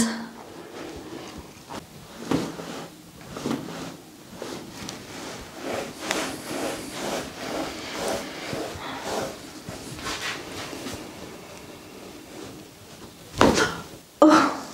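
Soft rubbing and rustling of hands working over a person's neck, skin and hair during a neck massage, a run of small irregular scuffs. About a second before the end comes a single louder, sharper sound.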